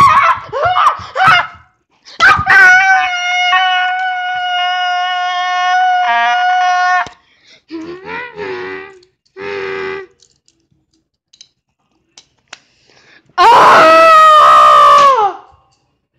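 A child's voice screaming in play: a long, high held cry of about five seconds, a few short vocal sounds, then a very loud scream near the end that falls in pitch.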